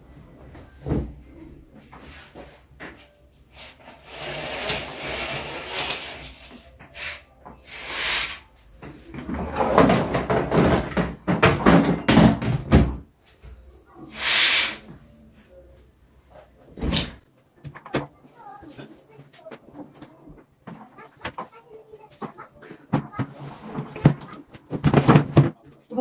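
Household tidying sounds: cushions and bedding rustling as they are handled, a curtain swished along its rail about fourteen seconds in, and a sharp knock a few seconds later.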